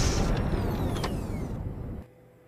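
Sci-fi energy-blast sound effect: a dense mechanical rush with several falling whines, fading away over two seconds and cutting off abruptly.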